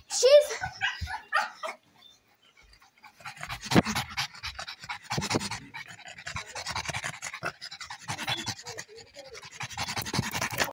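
A dog panting rapidly, close to the microphone, from about three seconds in. A person's voice is heard briefly at the start.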